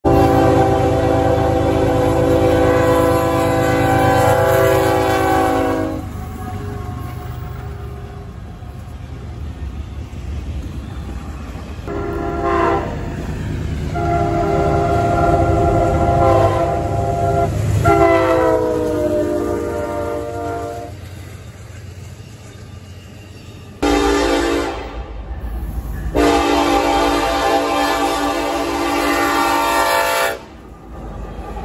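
Diesel freight locomotive air horns blowing for grade crossings, several long blasts in a string of edited clips, over the low rumble of the passing train. Around the middle one horn's chord slides down in pitch as the locomotive goes by, and a heavy rumble starts abruptly near the end.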